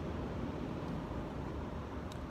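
Steady outdoor background noise, an even hiss and rumble with no distinct event.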